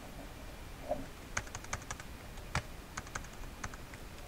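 Faint typing on a computer keyboard: about a dozen irregular key clicks, beginning a little over a second in.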